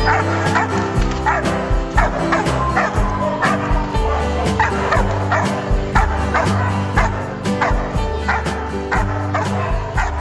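Pit bull barking many times over and over, over background music with a steady beat.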